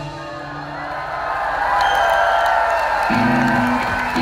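Live rock band heard from the audience: the drums drop out and held guitar notes ring away while the crowd cheers and whoops, swelling about a second in. Guitar notes start up again near the end.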